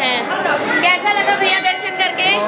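People talking: overlapping chatter of a crowd in a large hall.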